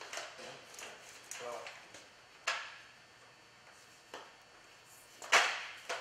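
Sharp clacks of a blower door's metal frame sections being handled and fitted together, a few separate knocks, the loudest near the end.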